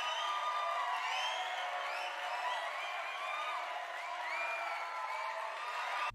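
A crowd cheering and whooping, with a thin sound lacking any bass, running at an even level.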